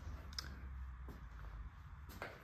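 Quiet room tone: a low steady hum with a couple of faint clicks, about half a second and a second in.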